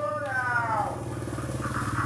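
A vehicle engine running steadily, with a tone sliding down in pitch over the first second and a brief rasping noise near the end.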